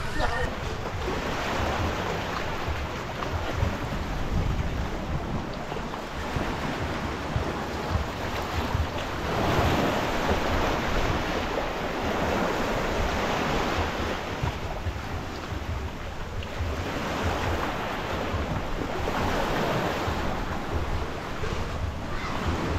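Small sea waves washing onto a rocky shore, swelling and easing in slow surges, a louder surge about halfway through. Wind rumbles on the microphone throughout.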